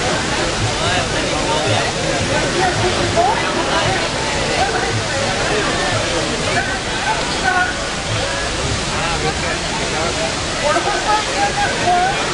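Steady rush of water falling into the basin of the Fontaine Saint-Michel, a large cascading public fountain, with unclear voices of people talking over it.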